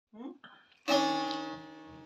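Bağlama (Turkish long-necked saz) strummed once about a second in, its strings ringing on and fading away.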